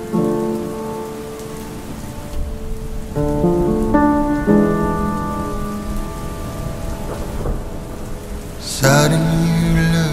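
Steady rain falling on pavement with a rumble of thunder, under sustained musical chords that change a few times. A louder, voice-like sound enters near the end.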